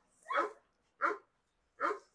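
A dog barking three times: short, sharp barks spaced evenly.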